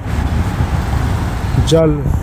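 Street traffic noise: a steady low rumble of passing road vehicles.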